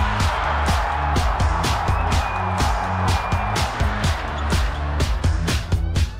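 Background music with a steady drum beat over a bass line.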